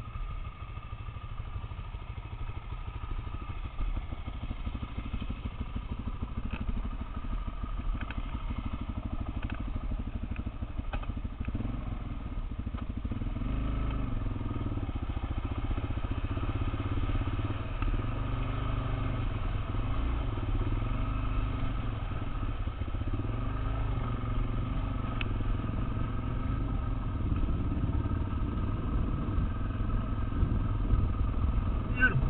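Off-road motorcycle engine heard from the rider's helmet while riding, getting louder and working harder from about the middle on. A few sharp clicks sound in the first half.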